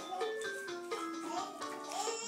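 Electronic keyboard sounding a simple melody, one held note after another, stepping up and down in pitch.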